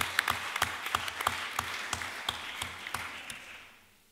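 Audience applauding, the clapping thinning out and fading away in the last second.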